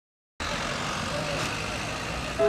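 Busy street ambience, with traffic noise and background voices, cutting in suddenly about half a second in after silence.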